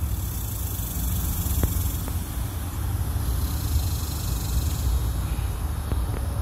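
Steady low rumble with an even hiss of outdoor background noise, and two faint ticks about one and a half and two seconds in.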